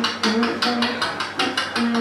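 Beatboxing into a handheld microphone: a fast, even rhythm of drum-like mouth hits and clicks imitating a drum kit, with short low hummed tones between the beats.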